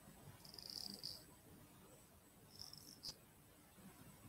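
Near silence: room tone through a webcam microphone, with two faint brief high hisses and a small click about three seconds in.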